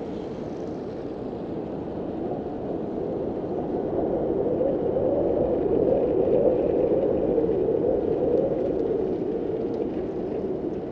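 Snowmobile engine running as a steady drone that grows louder from about three seconds in and eases off slightly near the end.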